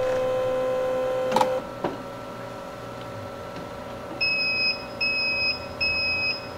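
A Melitta Cafina XT4 coffee machine's internals run with a steady hum during its brewer pre-rinse, which stops with a click about a second and a half in. Near the end the machine gives three short high beeps, its prompt to insert the brewer cleaning tablet.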